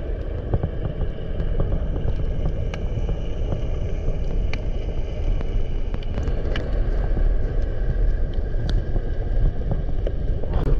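Underwater ambience picked up by the camera: a steady low rumble of water, with scattered sharp clicks.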